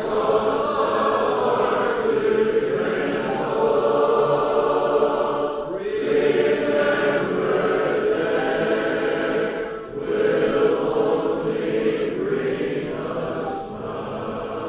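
Recorded choir music: a group of voices singing long, held phrases, with short breaks about six and ten seconds in.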